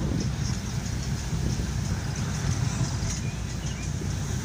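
Road and engine noise inside a car driving on a wet road in light rain: a steady low rumble with a hiss over it.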